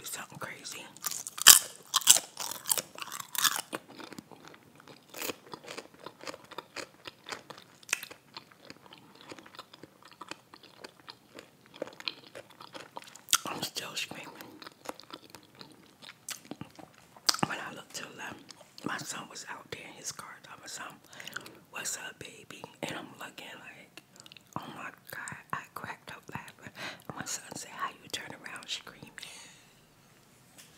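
Close-miked chewing and biting of a grilled hot pepper cheese sub, wet mouth sounds with crisp crunches. The loudest crunches come in a cluster about two seconds in.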